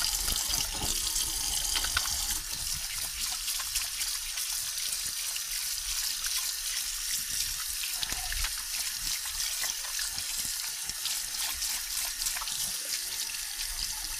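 A tap running steadily into a sink while hands are scrubbed under the water.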